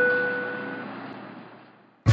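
Airliner cabin chime sounding once as a single ding, over steady cabin noise that fades out to silence near the end.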